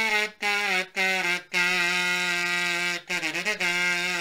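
Kazumpet, a brass kazoo shaped like a small trumpet, buzzed to a hummed tune: a few short notes, then a long held note, a brief wavering bend, and another held note.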